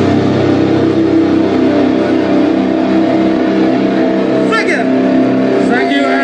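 Amplified distorted electric guitar and bass holding a steady droning chord through the PA, with no drums. A short voice cuts in about four and a half seconds in.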